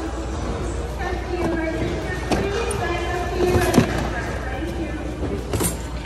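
Background chatter of other shoppers in a large, busy store, with a steady low hum. Goods being handled in the bins make a few knocks and clatters, the loudest a little before four seconds in.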